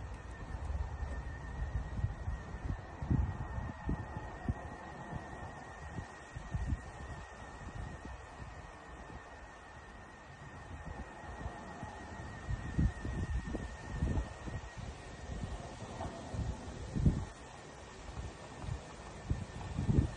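A faint, steady high-pitched tone of unknown origin, which the recordist calls a weird sonar sound, wavering slightly in pitch, with a lower, fainter tone that comes and goes. Wind rumbles on the microphone underneath.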